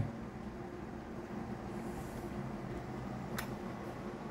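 Quiet, steady low hum and hiss of running machinery, with one short click about three and a half seconds in.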